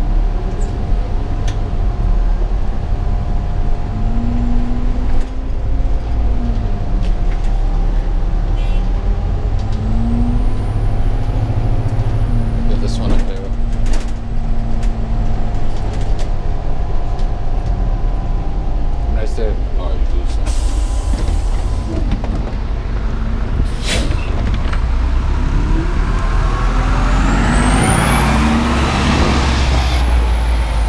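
City transit bus driving: a steady low rumble with the engine note rising and falling in pitch, scattered rattles and clicks, and a short hiss of air about two-thirds through. Near the end a high whine climbs and falls over a swell of noise as the bus pulls away.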